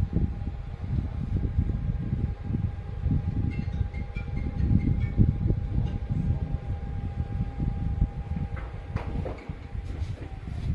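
Motor of a motorised bioclimatic pergola humming steadily as it rotates the roof louvres shut, with light ticking midway. The hum stops with a few clicks about nine seconds in, as the louvres close fully. A loud, uneven low rumble runs underneath.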